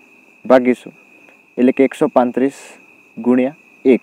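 A cricket trilling, one steady high-pitched note that carries on without a break under a man's voice speaking in short phrases.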